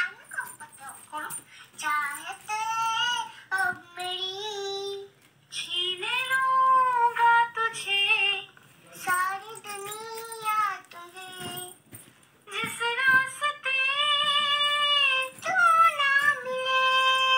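A young child singing in short phrases, holding long high notes with brief pauses between them, in a small room.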